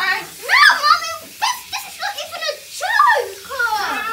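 A young girl crying out and whining in distress, a run of short high-pitched cries rising and falling in pitch.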